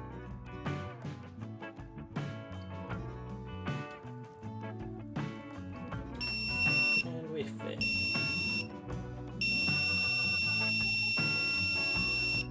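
Piezo beeper on a Proton rocket flight computer sounding as it powers up: two short high beeps about a second apart, then one long steady beep of about three seconds near the end, over background music.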